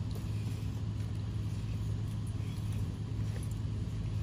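A steady low hum, like a motor or engine running, with light background noise over it.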